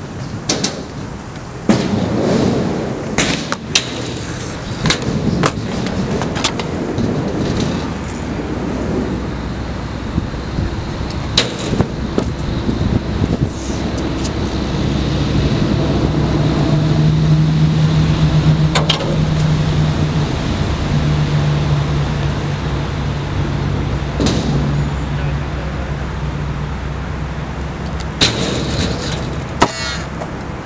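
Stunt scooter wheels rolling over a concrete skatepark, with sharp clacks and bangs from the scooters landing and hitting the ramps and ledges. A steady low hum comes in about halfway through and fades out a few seconds before the end.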